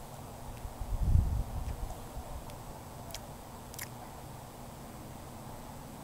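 A soft, low puff of breath about a second in, as a smoker exhales after drawing on a small cigar, over a faint outdoor background, with a couple of faint clicks later on.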